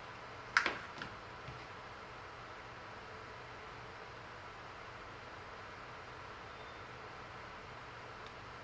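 A hot glue gun set down on a plastic cutting mat: one sharp knock about half a second in, then a few lighter taps. After that, only a steady low hiss and hum.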